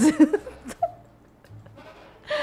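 Women laughing, the laughter dying away within the first second into a brief quiet pause.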